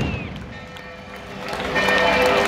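The rumble of a firework bang dying away, with a short whistling glide at the start. About a second and a half in, crowd voices and music rise again.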